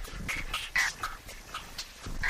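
Experimental electronic music built from short, chopped sampled sounds following one another irregularly, several a second, some of them pitched.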